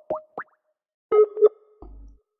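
Skype placing an outgoing call: four quick blips rising in pitch, then a ringing tone that pulses twice about a second in, the signal that the call is ringing through to the other side.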